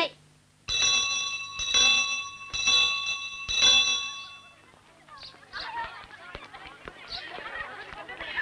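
A school bell rung four times about a second apart, each stroke ringing with the same metallic tones, marking the end of the lesson. After the ringing stops there is a faint murmur of children's voices.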